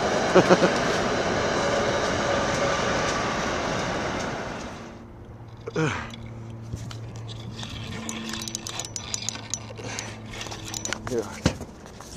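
Passenger train running across a stone arch railroad bridge, a loud steady rush of wheels on rails that fades out about five seconds in. After it a quieter low steady hum remains, with a few small clicks.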